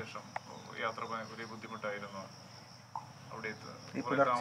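Faint, indistinct voices over a steady high-pitched drone.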